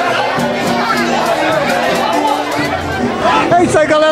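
Live pagode samba music with a steady percussion beat, over the chatter of a crowd; a man's voice starts close up near the end.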